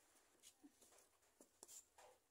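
Near silence: room tone with a few faint, short clicks and rustles of hands at work, about half a second in and again around one and a half seconds.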